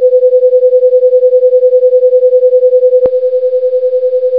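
A loud, steady electronic tone of one pitch, with a fast, even pulsing. It begins abruptly, and a sharp click about three seconds in is followed by the same tone a little softer.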